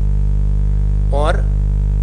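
Loud, steady low electrical mains hum with several overtones, unchanging throughout, with a single short spoken word about a second in.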